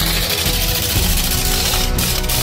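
Pneumatic impact wrench hammering on the lug nuts of a semi truck's rear dual wheel in one continuous burst that starts abruptly and stops just before the end, over background music.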